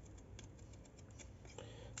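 Faint snips of a pair of scissors cutting through grosgrain ribbon: a few soft clicks of the blades.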